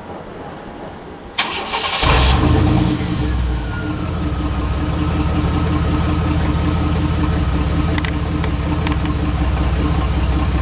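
Compact pickup truck's engine started about a second and a half in: a brief cranking noise, a loud flare as it catches, then it settles into a steady idle. As it settles, a whine falls in pitch and then holds steady.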